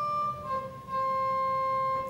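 Pipe organ playing the close of a Baroque prall trill: a higher note steps down about half a second in to the final note, which is held steadily and then released.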